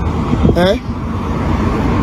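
A steady low rumble of background noise, with a woman's short exclamation "eh" rising in pitch about half a second in.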